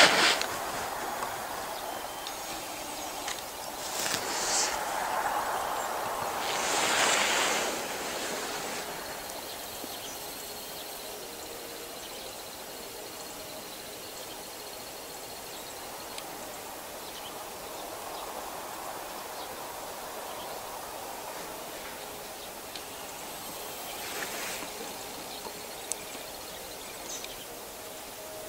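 Steady outdoor background noise with a few brief, louder rushes of noise, the strongest about seven seconds in.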